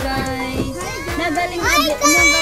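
Overlapping voices of a young child and adults inside a car, with a high voice rising sharply in pitch near the end.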